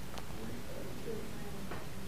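Quiet classroom room tone with faint, distant voices, and two light taps of a dry-erase marker on a whiteboard, one near the start and one near the end.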